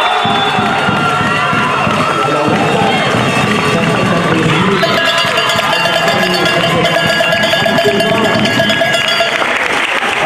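Spectators in a sports hall shouting and cheering through the end of a volleyball rally and the point that follows. About halfway through, a steady rapidly pulsing ringing joins the crowd noise.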